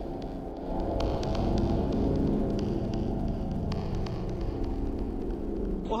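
A low, steady droning hum of several held tones, growing a little louder about a second in.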